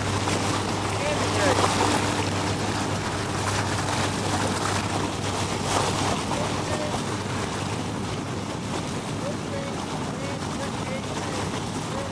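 Steady drone and rushing noise of a motorboat under way, heard from on board, with faint voices in the background.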